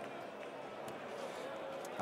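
Faint, steady background noise with no distinct sound standing out.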